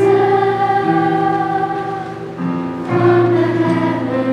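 A youth choir singing long held chords, moving to new chords about a second in and again between two and three seconds in, accompanied on a digital piano.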